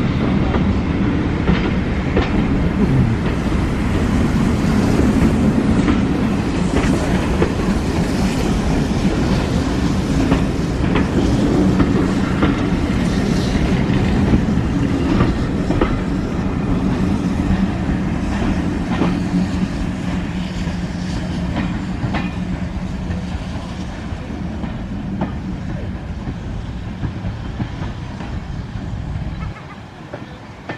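Passenger coaches of a steam-hauled train rolling past close by: a steady low rumble with the wheels clacking over the rail joints. The sound fades gradually over the last several seconds as the train draws away.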